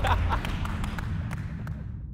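Basketballs bouncing on a sports hall floor, an irregular scatter of sharp knocks, over a low music bed, all fading out.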